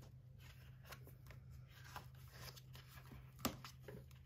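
Faint rustling and light clicks of a sticker book's paper pages being handled and turned, with one sharper click about three and a half seconds in.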